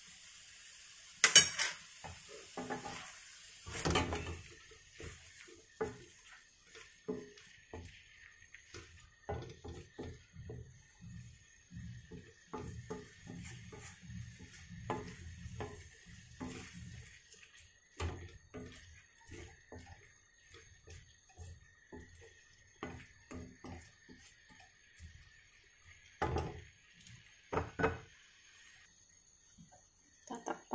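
A spatula stirring chopped beef and offal in a wide metal pan: a long run of irregular clinks, knocks and scrapes against the pan. The loudest knocks come about a second and a half in, near four seconds, and twice close to the end.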